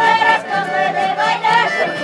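Andean festival music played live by a band of strummed acoustic guitars, with a high, held melody line that wavers in pitch over a steady bass.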